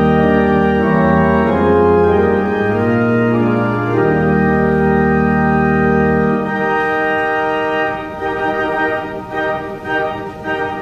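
Church organ playing hymn music in sustained chords over deep pedal bass notes. The bass drops out about six and a half seconds in, and the sound thins and softens toward the end.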